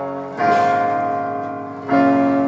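A live band plays acoustic guitar and a Nord stage keyboard in slow, ringing chords with no singing. Two chords are struck, one about half a second in and the next near the end, each left to ring and fade.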